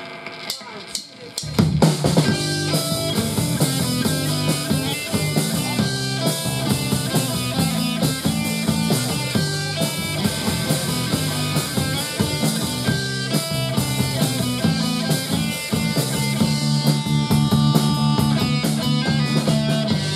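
Live punk rock band starting a song: about a second and a half in, drum kit, electric guitar and bass guitar come in together and play an instrumental intro with a steady driving beat.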